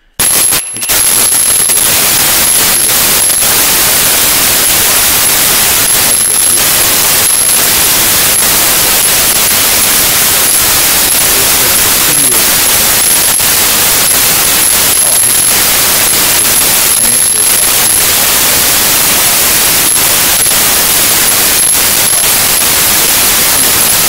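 Loud, harsh static hiss with a thin, flickering high whistle running through it. It cuts in suddenly at the start and cuts off suddenly at the end, a fault in the audio track that drowns out the recorded conversation.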